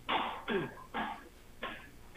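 A person's voice in four short breathy bursts, about two a second.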